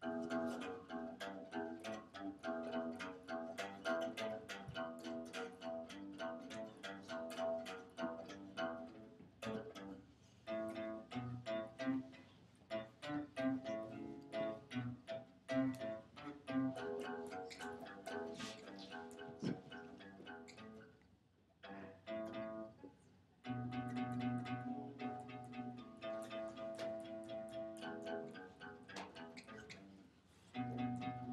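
Acoustic guitar played solo by picking single notes, a spy-theme riff repeated over and over, with a short break about two-thirds of the way through before the playing picks up again.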